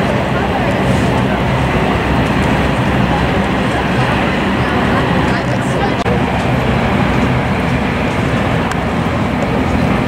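Steady noise of a motorboat underway, its engine running under rushing water and wind, with a murmur of voices in it.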